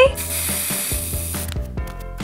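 Aerosol hairspray spraying in one hiss of just over a second, which cuts off about a second and a half in, over background music with a steady beat.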